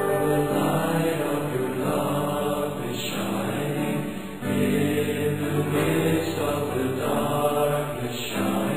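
Background music of slow, held chords that change every second or so, with a brief dip in level about four and a half seconds in.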